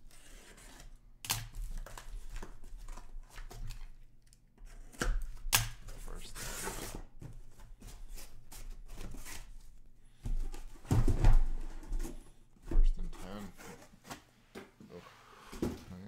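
Cardboard shipping case being opened: a box cutter slits the packing tape with tearing and scraping, then cardboard flaps rub and sealed boxes are slid out and handled. There are irregular scrapes and a few sharp knocks, the loudest in the last third.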